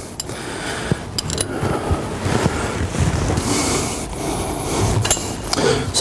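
Gloved hands fitting and tightening the drain plug into the base of a steel hydraulic filter bowl: a few light metal clicks and rubbing over a steady rushing noise.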